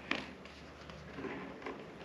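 Faint clicks and taps as a metal lever tool is fitted against a screw in a loudspeaker driver's chassis, the sharpest click right at the start.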